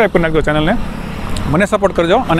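A man talking, with a break of about a second in the middle; a steady low rumble of background noise runs beneath his voice.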